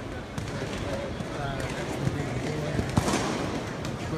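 Balloons popping amid the chatter of a crowd: one sharp, loud pop about three seconds in, with a few fainter pops before it.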